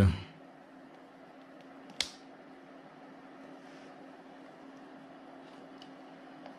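Steady low hum of a converted ATX computer power supply running, with one sharp click about two seconds in as a control on the bench supply's front panel is switched.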